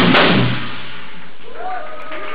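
A live rock band's song ends with the drum kit stopping about half a second in, leaving steady crowd noise. Near the end a voice calls out in one drawn-out cry.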